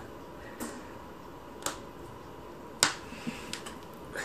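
A few sharp, irregular clicks over quiet room tone, about five in all, the loudest a little under three seconds in.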